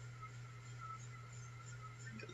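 Quiet room tone: a faint steady low hum with light hiss and no distinct events.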